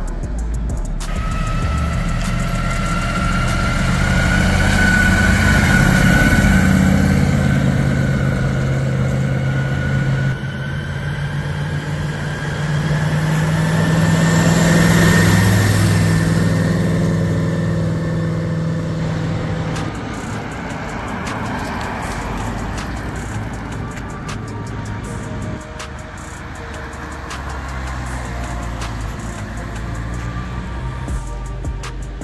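Sports cars driving away one after another, engines accelerating as they pass, with louder swells about 6 and 15 seconds in, over background music.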